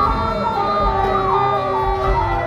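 Live improvised band music: a high lead line wavers and glides in pitch, siren-like, over a low bass pulse.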